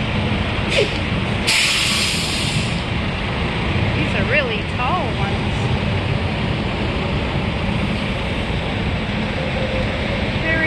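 Steady low rumble of vehicles at a highway rest area, with a loud hiss about a second and a half in that lasts about a second.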